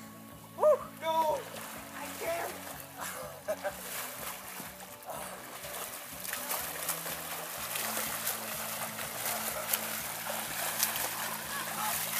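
Water splashing as a person in a life jacket thrashes and is pulled through a lake, the splashing growing louder and denser in the second half, over background music. A brief voice is heard about a second in.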